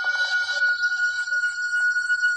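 Sustained high electronic tones from the film's soundtrack. One steady tone holds throughout, and just before the start a cluster of higher, shimmering tones joins it and carries on. Faint short taps sound through it now and then.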